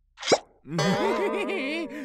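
A cartoon bubble plop, a short quick upward-sweeping pop, followed by a character's wavering voice whose pitch wobbles rapidly up and down, about six or seven wobbles a second.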